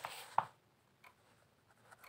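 Pen writing on notebook paper: a short scratching stroke with a light tick about half a second in, then the pen goes quiet.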